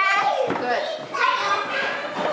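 Young children's voices chattering and playing, with high-pitched bursts of talk at the start and again about a second in.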